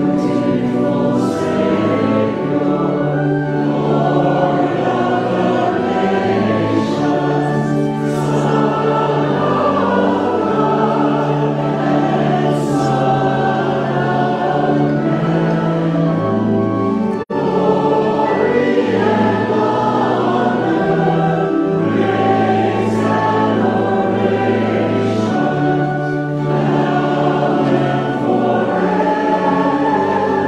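Several voices singing a hymn together in harmony, with long held notes. The sound cuts out for a moment about seventeen seconds in.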